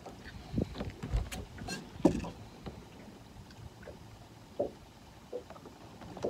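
A few light knocks and bumps of someone moving about and handling gear on a small fishing boat, over faint low background noise.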